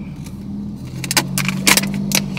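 Car keys jangling in a quick run of metallic clicks starting about a second in, over a steady low hum in the car's cabin.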